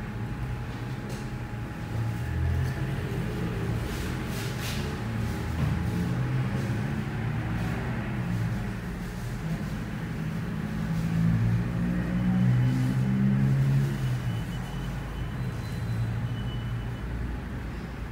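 Background music with a low bass line that steps between notes.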